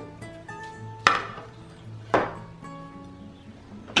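A plate being set down on a glass tabletop: two sharp clacks about a second apart, each with a short ring. Quiet background music of held plucked notes plays underneath.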